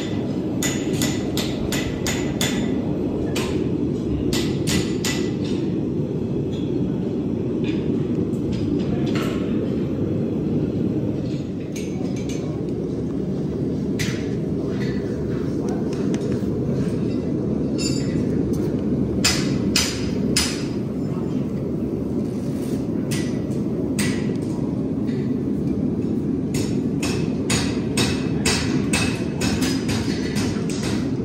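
Bursts of sharp ringing knocks, several a second, over a steady low rushing noise.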